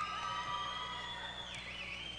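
Several long whistles held at once, wavering slightly in pitch, the highest one dropping near the end: audience members whistling for a graduate.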